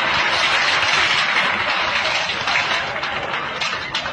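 Large crowd applauding a speaker, dense clapping that begins to thin out near the end.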